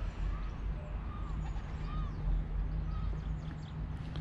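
Outdoor ambience: a steady low rumble, with a short squeak repeating about every two-thirds of a second and a few faint, higher bird chirps.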